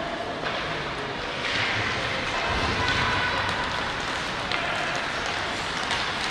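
Ice hockey play on the ice: skates scraping and carving, with occasional stick-on-puck clicks, over a steady arena hiss that swells about one and a half seconds in.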